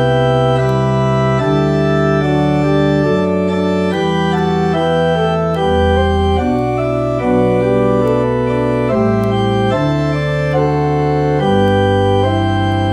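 Church organ playing a hymn in held chords that change every second or so, with a steady bass line underneath.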